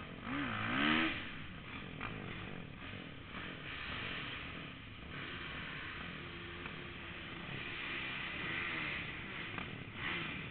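Kawasaki 450 flat-track motorcycle engine revving, heard through a helmet camera. A quick rise and fall in pitch comes about a second in, the loudest moment, then the engine runs on at a steadier pitch.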